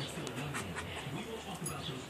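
Two dogs play-wrestling, making low vocal sounds and panting, with a television voice talking in the background.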